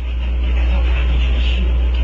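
A steady low hum with a faint hiss over it, the recording's constant background noise, with no speech.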